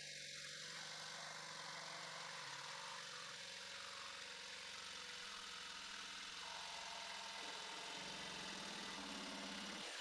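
Corded Ryobi jigsaw running and cutting through a board, a steady buzzing saw noise with no break.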